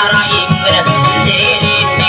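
Guitar plucked and strummed in a quick, steady rhythm, playing dayunday music.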